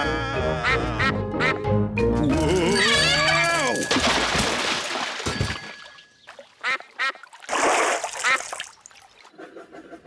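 Cartoon score music with a falling glide in pitch, then a brief rush of noise as the music stops, followed by cartoon ducks quacking several times.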